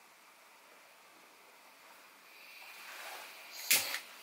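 Gas hissing from a small burner jet, starting faint about halfway through and building, then one sharp click near the end as a gas lighter sparks it.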